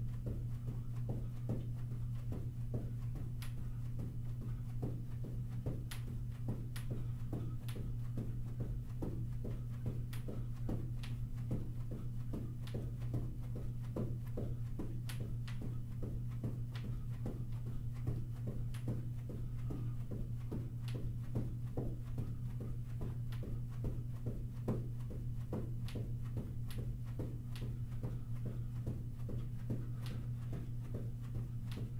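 Athletic shoes thudding softly on a carpeted floor while jogging in place, an even rhythm of footfalls a few times a second, over a constant low hum.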